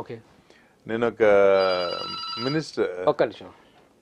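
A man's voice holding one long drawn-out call for about a second and a half, with faint steady high electronic tones over it, then a few short spoken sounds.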